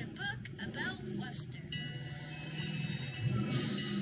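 Children's cartoon soundtrack music playing from a television, with a few short chirpy sound effects near the start and then steady held notes from about two seconds in.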